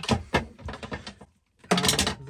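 A mains power cable being handled: a series of short knocks and rustles as it is lifted and moved, then a brief pause.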